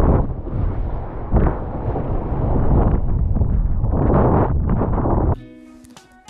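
Strong wind buffeting an action camera's microphone, surging and easing, over rushing whitewater in the shore break. It cuts off suddenly near the end, where plucked guitar music comes in.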